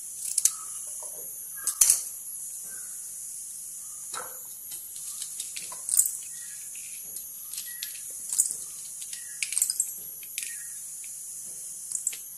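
Ingredients such as garlic cloves, ginger and peppercorns being picked off a steel plate and dropped into a stainless-steel mixer jar: scattered light clicks and taps, over a steady hiss.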